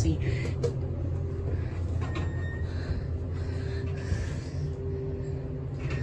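Elevator car travelling, with a steady low rumble and hum. The ride is shaky and bumpy.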